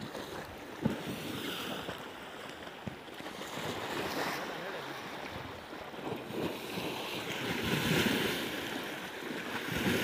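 Fast, muddy Indus River water rushing and lapping against a crumbling sandy bank that it is eroding, with wind buffeting the microphone. Near the end a chunk of the undercut bank breaks off and splashes into the current.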